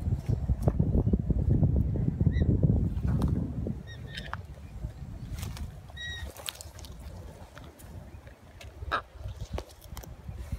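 A low rumbling noise for the first three to four seconds, then a few short, faint bird chirps, the clearest about six seconds in, with scattered light clicks.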